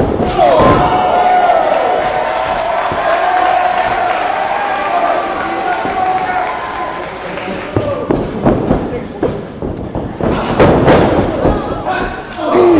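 A voice holding a long, wavering yell without words for about six seconds. From about eight seconds in come a string of sharp thuds and slaps: wrestling kicks and strikes landing on a body in the ring corner.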